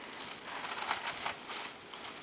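Tissue paper rustling and crinkling softly as it is pulled out of a cardboard gift box by hand, with a few crisp crinkles about a second in.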